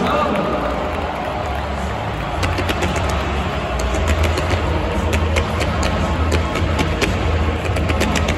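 Music played over a stadium public-address system, its heavy bass coming in about two and a half seconds in, over crowd noise. A scatter of sharp cracks runs through it.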